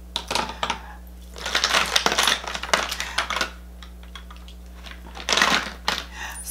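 Makeup products and their cases being handled and set down on a table: rapid clattering and clicking in three spells, the longest in the middle.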